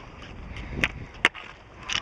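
Roller ski wheels rolling on asphalt, with sharp clicks of pole tips striking the pavement, a few of them about half a second apart.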